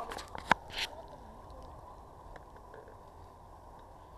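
Two sharp clicks in the first half-second from handling the plastic hobby RC transmitter and its switches, then a quiet steady background with a faint steady tone.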